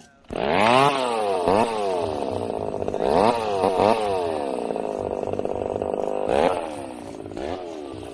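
Small motorcycle engine revved hard in repeated sharp throttle blips, the pitch jumping up and falling back about seven times, as the rider holds the bike up on wheelies.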